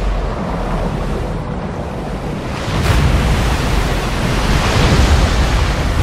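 Rushing, surging water with a heavy deep rumble, the underwater sound effects of a film scene, growing louder about three seconds in.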